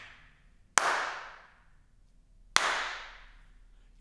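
Two sharp hand claps, a little under a second in and about two and a half seconds in, each followed by a long echo tail dying away over about a second: the reverberation of a large, high-ceilinged room full of reflective surfaces, heard from claps made away from the microphone. The fading tail of an earlier clap trails off at the start.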